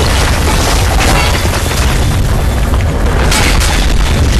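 Loud action-film sound mix: a continuous deep booming rumble with scattered impacts over background music.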